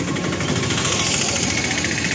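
A small motor running with a rapid mechanical rattle. It gets louder about a second in, then falls in pitch.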